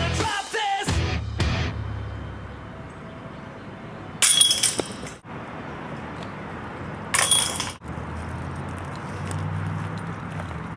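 Disc golf disc striking the hanging chains of a metal basket, a sudden metallic chain jangle twice: about four seconds in and again about seven seconds in. Background music fades out in the first second or two.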